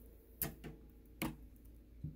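Three light clicks: two close together about half a second in, and one more just after a second.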